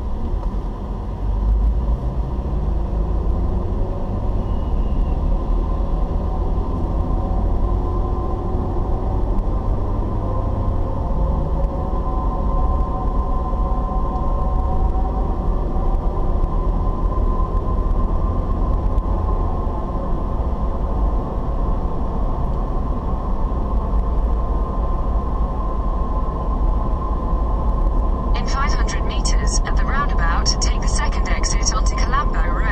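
Car cabin noise picked up by a dashboard camera: a steady low road and engine rumble while driving, the engine note rising in steps through the first ten seconds as the car pulls away. Near the end a run of rapid sharp clicks starts.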